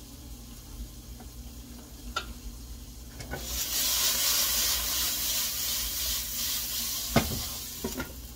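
Vegetables sizzling in a hot skillet: about three and a half seconds in, the glass lid is lifted and a loud hiss of sizzling and escaping steam rises, then dies down over about three seconds. A low steady hum runs underneath, with a couple of light clicks before the lid comes off and a single knock of metal on the pan about seven seconds in.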